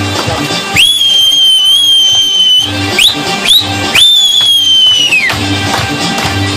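Shrill whistling over folk dance music: a long held whistle, two short rising whistles, then another long whistle that falls away at its end. The dance music's steady beat carries on beneath.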